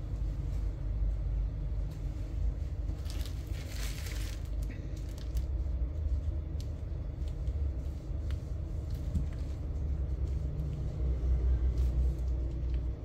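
Steady low background rumble, with a brief rustling hiss about three seconds in and a few faint scattered clicks.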